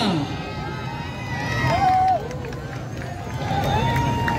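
Crowd of voices shouting and calling out over a general murmur, with a few drawn-out shouts rising above it.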